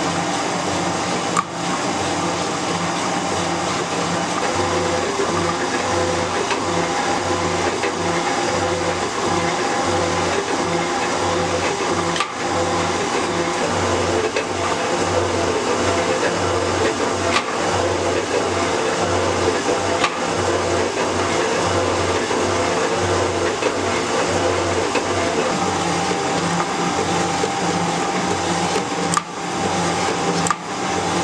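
Metal shaper running, its ram stroking back and forth in a steady, even rhythm as the cutting tool takes passes across steel tool squares, with a few sharp clicks from the mechanism.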